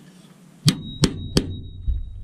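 Three sharp metallic taps about a third of a second apart, then a softer knock, with a thin ringing note hanging after the first tap, from the steel axle rod and wheel being worked onto the pressed-steel body of a Tonka toy fire truck.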